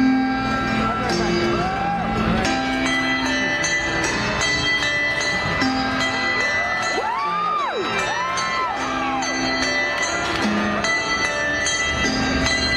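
Handbells played by a four-person ensemble: single notes rung one after another, each ringing on, making up a tune. Crowd noise runs underneath, with a few rising-and-falling whoops from the audience about seven seconds in.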